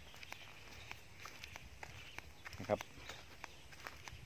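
Faint footsteps on dry ground: a loose series of soft, light ticks at a walking pace.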